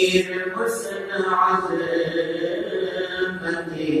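A man chanting a devotional manqabat unaccompanied, holding long drawn-out notes that bend in pitch.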